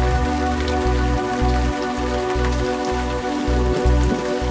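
Rain: a steady hiss with scattered drops, heard over background music of sustained tones and a low pulse about twice a second.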